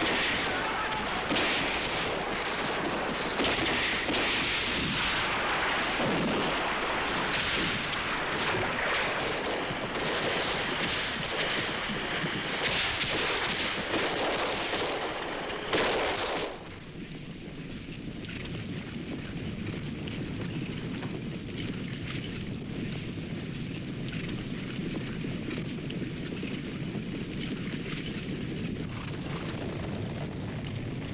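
Battle sound effects from a film soundtrack: dense rifle gunfire and battle noise. About sixteen seconds in it cuts off suddenly to a quieter, steady low rumble.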